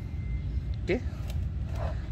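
A man says "ok" once over a steady low background rumble, with a few faint light knocks.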